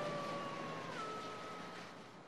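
Logo intro soundtrack: a steady rushing noise with two held tones, the higher one stepping up slightly about a second in, fading out steadily.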